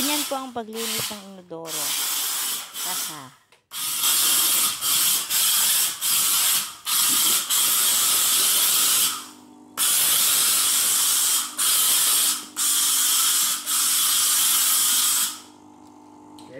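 Floor steam cleaner's hose nozzle hissing out steam in long spurts with short breaks between them, starting a few seconds in and stopping just before the end. A low steady hum sits beneath the hiss in the second half.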